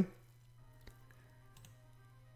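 Near silence: a low steady hum of room tone with a couple of faint clicks, about a second in and again past the middle.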